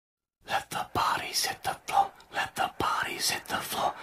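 A person's voice making rapid, breathy, whispered sounds in short bursts, several a second, with a few sharp low knocks among them.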